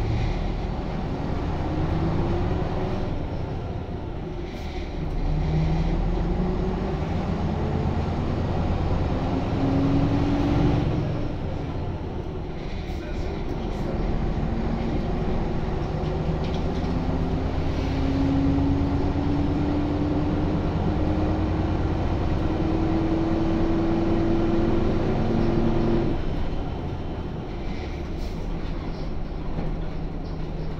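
WSK Mielec SWT 11/300/1 six-cylinder diesel of a Jelcz 120M city bus, heard from inside the passenger saloon as the bus drives. Its note rises steadily under acceleration and drops back at each shift of the four-speed FPS Tczew automatic gearbox: about four and eleven seconds in, then again after a long slow rise near the end.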